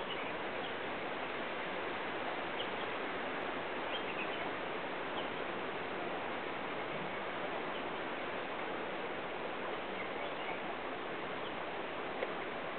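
Steady outdoor hiss with a few faint, brief bird chirps scattered through it.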